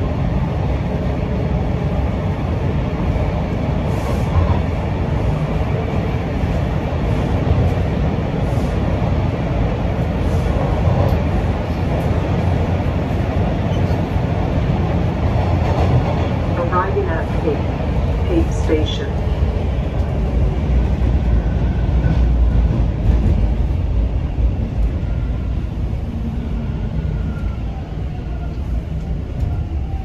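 Toronto subway train heard from inside the car, running with a steady heavy rumble as it comes into a station. It gives a brief squeal about halfway through, and the rumble eases toward the end as the train slows.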